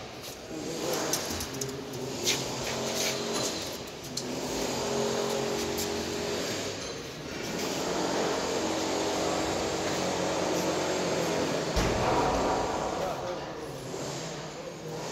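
Men's voices talking over a steady mechanical background noise, with a few sharp clicks in the first few seconds and a low thump near the end.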